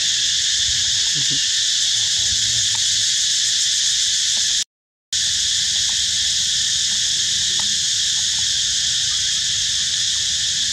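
Steady, loud, high-pitched chorus of insects shrilling without a break, with a low rumble beneath it. The whole sound cuts out for about half a second around the middle, then resumes.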